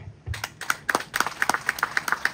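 Audience clapping, starting about a third of a second in, with the separate claps heard one by one rather than as a dense roar.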